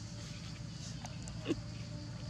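A baby long-tailed macaque gives one short cry that falls in pitch, about a second and a half in, over a steady low background rumble.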